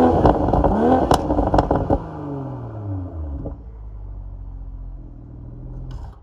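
BMW M340i's turbocharged 3.0-litre inline-six, tuned with a JB4 on Map 4, revved in quick blips through the exhaust, with sharp pops and crackles as the throttle is released. The revs then fall away and settle to a steady idle about three and a half seconds in.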